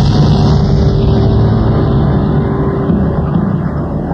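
A loud, steady low rumble that stands in for the music of the recorded intro track, with a faint held tone that stops about three seconds in.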